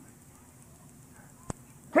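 A pause in a man's speech on an old cassette recording: faint, steady tape hiss with a single sharp click about one and a half seconds in. The man's voice starts again right at the end.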